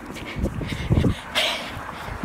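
Phone microphone jostled as it is carried at a run: irregular handling thumps and rubbing. There is a short breathy huff about a second and a half in.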